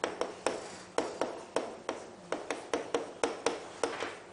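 Chalk writing on a chalkboard: an irregular run of sharp taps, about four a second, as each stroke lands, each tap trailing off in a short scrape.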